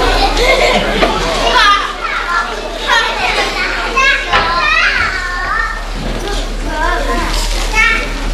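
Children in a pantomime audience shouting and calling out, many high voices overlapping with sharp rises and falls in pitch.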